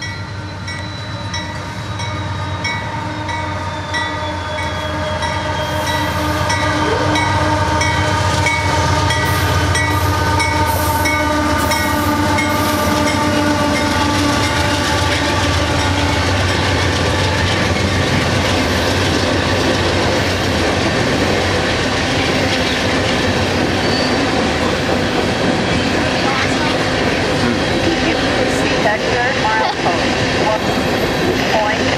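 Freight train of coal cars led by diesel locomotives, coming closer and passing. The engines grow louder over the first several seconds, then the steady rumble and clatter of the coal cars rolling by takes over.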